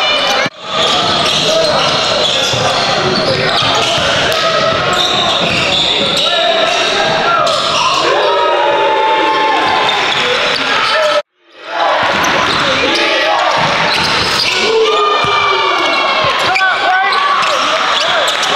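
Live basketball game sound in a gym: a ball dribbling on the hardwood under indistinct shouting and chatter from players and spectators, echoing in the hall. The sound cuts out briefly twice, about half a second in and about eleven seconds in.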